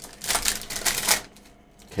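Foil wrapper of a Panini Prizm football hobby pack crinkling and tearing as it is ripped open by hand. The crackling lasts a little over a second, then quietens.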